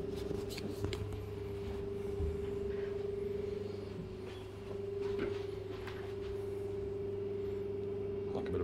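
A steady low hum of one pitch, as from a building's ventilation or electrical plant, with scattered faint knocks and rustles from footsteps on carpet and a handheld camera.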